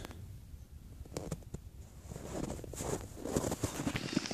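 Faint footsteps crunching in snow, with a few soft clicks about a second in and a steady low rumble on the microphone.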